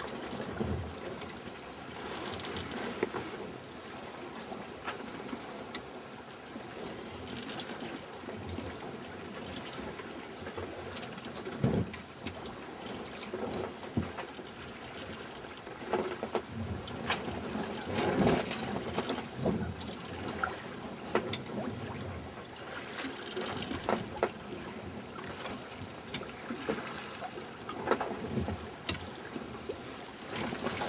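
Water washing and trickling along the stern of a sailboat sailing downwind at about three knots, rising and falling in surges with the swell. Occasional short sharp knocks are heard through it.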